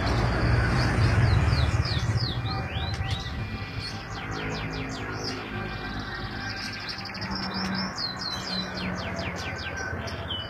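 Caged white-rumped shamas (murai batu) calling, a quick run of short sweeping chirps that grows busiest near the end. A low rumble sits under the first few seconds.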